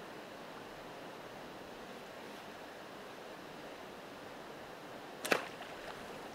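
Steady rush of flowing creek water, with a single sharp snap about five seconds in from a bowfishing bow being shot.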